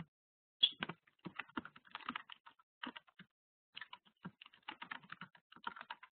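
Typing on a computer keyboard: quiet, irregular key clicks, several a second.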